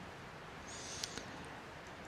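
Faint steady hiss of a quiet room, with a brief, faint, high chirp and a light click about a second in.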